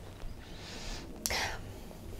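A woman's breathing while she is close to tears: a soft drawn-in breath, then a shorter, sharper breath about a second and a quarter in.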